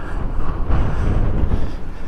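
Wind buffeting the microphone: a low, uneven rumble that swells about half a second in and eases near the end.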